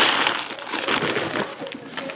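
Plastic wrapping crinkling and crackling as it is torn and crumpled by hand, a dense run of small irregular crackles.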